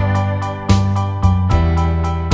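Instrumental background music led by a keyboard, with a new chord struck about every half second.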